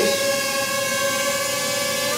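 Ryze Tello mini quadcopter hovering, its four small propellers giving a steady, even whine with one strong tone and many overtones.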